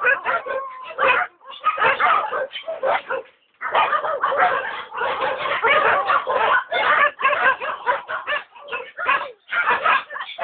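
A large pack of penned dogs barking over one another, many short overlapping calls with a brief pause about three and a half seconds in.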